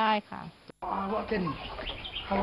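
The last syllable of a woman's speech, then, after a short break in the sound, a farm animal calling in the background: a short pitched call that slides down in pitch, over quiet outdoor ambience.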